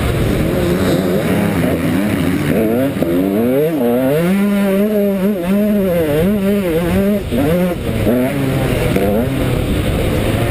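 KTM 125 SX single-cylinder two-stroke motocross engine being ridden hard, its pitch rising and falling again and again with the throttle and gear changes, waving most quickly in the middle.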